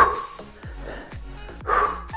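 Background music with a steady beat, with a short voice-like sound near the end.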